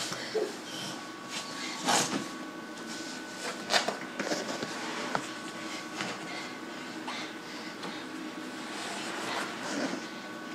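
Scattered thumps and rustling as a child handles a heavy fabric workout bag on a carpeted floor, with a few louder knocks, over a faint steady hum.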